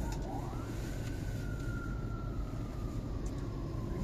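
Steady low rumble of dense, slow-moving road traffic heard from inside a car. A faint whining tone rises about half a second in, then slowly falls.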